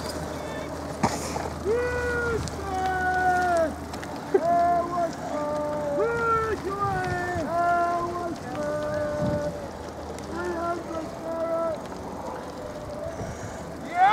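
Shouts of rowing supporters calling encouragement to the scullers, heard from farther off: a string of short, separate held calls throughout, with a low steady hum under the first few seconds.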